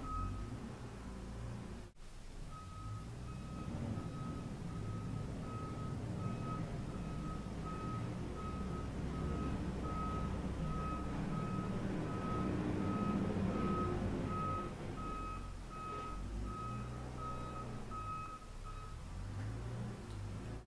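Construction vehicle's reversing alarm beeping at a steady pace, about three beeps every two seconds, over a low engine rumble. The beeping starts a couple of seconds in and stops shortly before the end.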